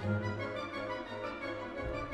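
Symphony orchestra playing sustained chords in a full texture over a steady low bass.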